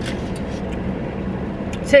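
Steady hum of a running car heard from inside the cabin, a constant low drone under an even rush of air.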